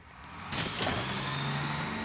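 School bus pulling away: a loud hiss about half a second in, then the engine running with a steady low drone.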